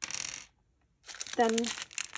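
Small plastic packets of resin craft pieces being handled: crinkling plastic with small hard pieces clicking against each other, in two short spells.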